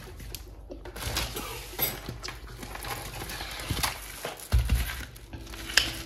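Groceries being unpacked on a counter: bags and packaging rustling, with small knocks and clatter as items are set down, and a dull thump about four and a half seconds in.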